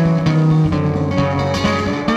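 Resonator guitar picked in a blues instrumental passage, with drums playing behind it.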